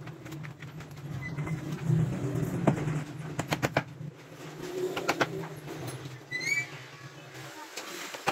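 Wooden baby cot being handled by hand, with several sharp wooden knocks and clicks in the middle, over a steady low hum that stops near the end. A short bird chirp sounds about six and a half seconds in.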